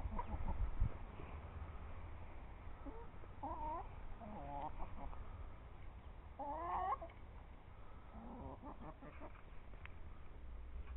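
Chickens in a flock clucking, with several short separate calls; the loudest comes about seven seconds in.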